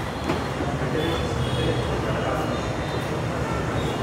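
MG Hector's electric window motors whirring steadily as all the windows lower together, with the sunroof opening, set off by a long press of the key fob's unlock button.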